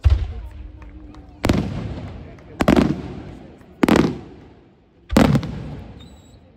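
Aerial firework shells bursting overhead: five loud bangs about a second and a quarter apart, each trailing off in a rumbling echo.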